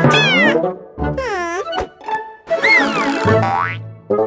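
Cartoon comedy sound effects over light background music: a quick falling glide, then a wobbling springy boing, a click, and a falling then long rising whistle-like glide near the end.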